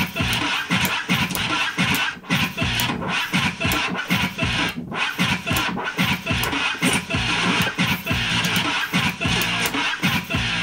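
Turntable scratching on vinyl: a hip-hop record cut up by hand and mixer in quick rhythmic strokes over a steady beat, as in a beat-juggling routine.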